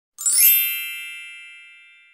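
A bright, high chime sound effect struck once just after the start, ringing and fading away slowly over the next second and a half.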